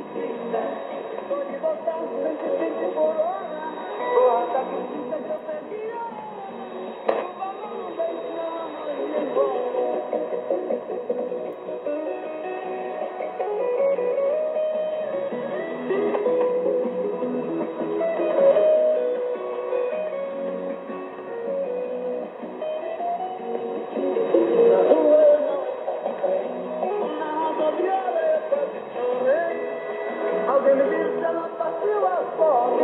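Shortwave AM broadcast from Rádio Clube do Pará on 4885 kHz, playing music with a voice, heard through the speaker of a Sony ICF-SW77 receiver. Reception is strong and clear, with the narrow, muffled top end of AM shortwave: nothing above about 4 kHz.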